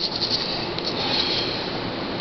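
A brush scrubbing a denture in up-and-down strokes, a steady bristly scrubbing noise.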